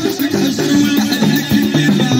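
Moroccan-style chaabi band playing an instrumental passage: a violin held upright on the knee carries the melody over keyboard, with a hand drum keeping a steady beat.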